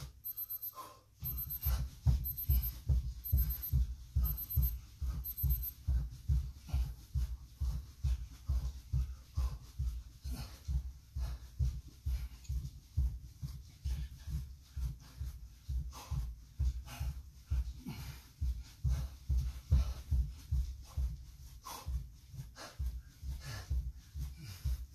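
Feet thudding on a carpeted floor in a quick, steady rhythm during mountain climbers, dull low thumps as the legs drive in and out in turn.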